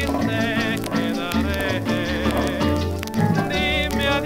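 A rumba played back from a 78 rpm shellac record: a Cuban dance band with a steady bass pattern and wavering high melody lines, under a light crackle of record surface noise.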